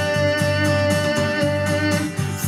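Instrumental backing music between sung lines: a held keyboard or organ chord with a lower line moving beneath it.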